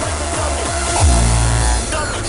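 Hardcore electronic dance music played in a live DJ set: a run of quick downward-swooping bass notes, then a deep bass note held for most of a second.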